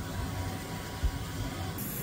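Steady low hum of a film scanner's transport and fans running as warped 8mm film passes through it, with a soft knock about a second in.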